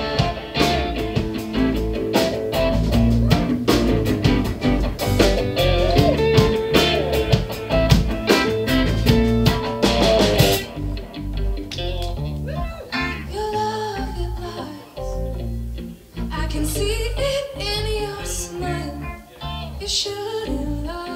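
A live rock band playing: electric guitars, bass and drum kit. About halfway through, the drums and cymbals drop out, leaving a sparser guitar-and-bass passage, with a woman singing near the end.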